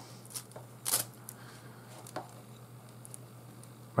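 Three-strand rope rustling in the hands as a strand end is pushed through under a strand of the lay and drawn snug during a splice tuck: a few short, soft brushing sounds, the clearest about a second in.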